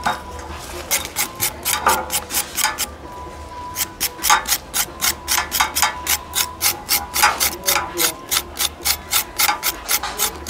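Knife blade scraping the charred skin off a fire-roasted yellow yam in quick, repeated strokes. The strokes come about four a second in the second half.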